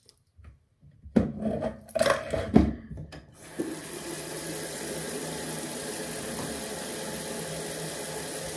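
A few loud clattering knocks of things being handled, then water starts running steadily about three seconds in and keeps going evenly.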